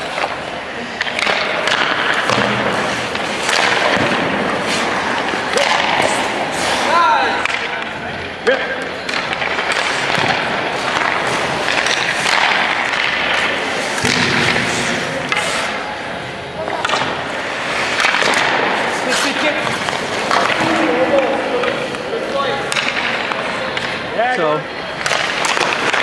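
Ice hockey practice on a rink: sharp, repeated clacks and knocks of pucks and sticks hitting goalie pads, sticks and the boards, over the scrape of skate blades on the ice.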